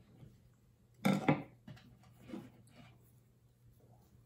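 A knife cutting through a raw seed potato: a short crunch about a second in, then a fainter one a little over two seconds in.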